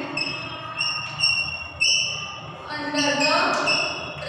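Chalk squeaking on a chalkboard while words are written: several short, high squeals, each a fraction of a second to about a second long, with voices murmuring underneath.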